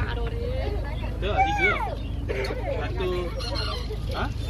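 Voices chattering over a steady low hum, with one loud high call that rises and falls about a second and a half in.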